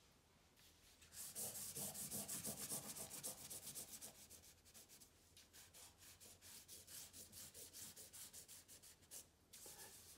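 A charcoal stick scratching on drawing paper in rapid back-and-forth shading strokes, several a second. The strokes start about a second in, grow fainter after a few seconds, and stop just before the end.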